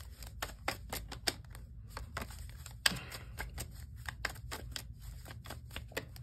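Tarot cards shuffled by hand: a run of irregular light clicks and taps, several a second, over a faint low room hum.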